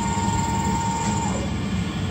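FastKey automated key-duplication kiosk's key-cutting mechanism running: a steady mechanical whir with a thin whine that stops about a second in, as the cut of the new key finishes.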